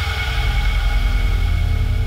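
Sports-broadcast ident music: a held chord of steady tones over a deep low rumble, the tail of the network's logo sting.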